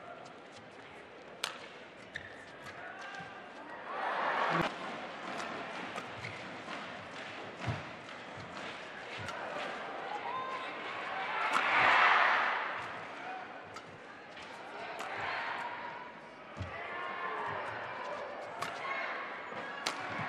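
Badminton rackets striking a shuttlecock in sharp single cracks during a rally in a large hall. A crowd's cheering and noise swells up several times, loudest about twelve seconds in.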